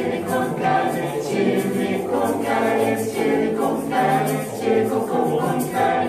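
Mixed male and female a cappella ensemble of about eleven voices singing in close harmony, an up-tempo rhythmic vocal arrangement built on repeated nonsense syllables, with no instruments.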